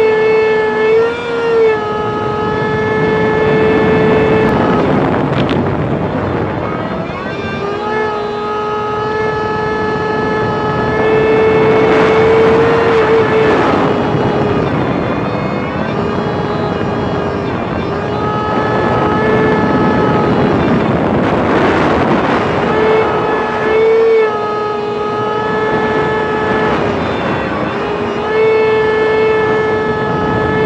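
Personal watercraft (jet ski) engine running at high speed, a steady high-pitched drone with brief rises and drops in pitch every few seconds, over the rush of wind and spray.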